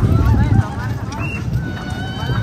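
Background crowd voices chattering over a steady low rumble.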